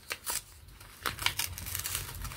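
X-Acto-style craft knife slitting open a paper envelope: two quick scratchy strokes at the start, then a run of short cutting and rustling strokes from about a second in.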